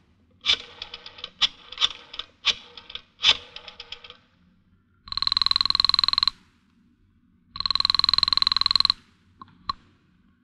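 A telephone bell ringing twice, each ring just over a second long with a pause of about the same length between them. Before the rings there is a run of sharp knocks and clicks, and a couple of brief clicks come after them.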